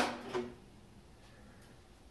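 A few sharp metal clacks of hand tools against the engine's valve gear in the first half second, then quiet, with only faint ticks.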